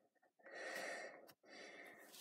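A faint breath close to the microphone, starting about half a second in, then a small click and a softer breath near the end.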